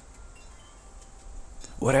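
Faint chimes ringing: a few thin, sustained tones in the pause, before a man begins speaking near the end.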